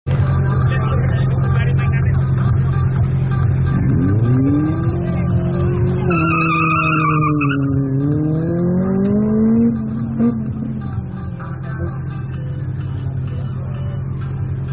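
Car engine at an autoslalom run, held steady at the start and then revving up as the car pulls away through the cones. Its pitch rises and dips with each throttle change, with a tyre squeal for a second or two about six seconds in. The engine gets quieter after about ten seconds as the car moves off.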